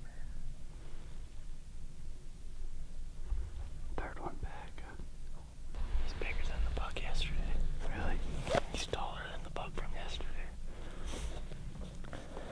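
Hushed whispering voices, starting about four seconds in and carrying on in short phrases.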